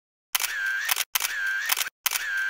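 Instant-camera sound effect, played twice: each time a shutter click, then a short whir with a steady high whine, ending in a few quick clicks.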